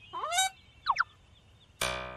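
Cartoon-style comedy sound effects added in the edit: a short bouncy pitch glide at the start, then two quick falling glides about a second in. Near the end a musical note with many overtones starts, the beginning of a music cue.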